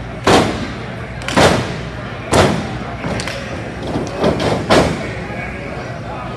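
Impacts in a pro wrestling ring: five loud thuds and slaps about a second apart, the last two close together, each ringing briefly in the hall.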